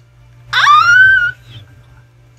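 A woman's high-pitched squeal of surprise, sweeping sharply up in pitch and held briefly, less than a second long.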